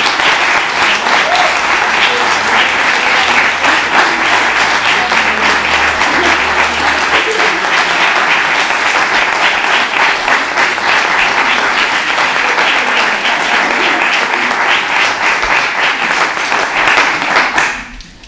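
Audience applauding, dense steady clapping for a winner's announcement, which stops just before the end.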